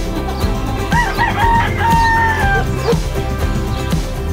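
Rooster crowing once: a few short clipped notes, then one long held note that sags in pitch at its end, over background music.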